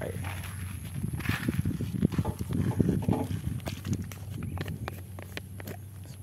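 Camera handling noise: irregular knocks and rubbing as the phone is fitted to a motorcycle's handlebar, over a steady low hum.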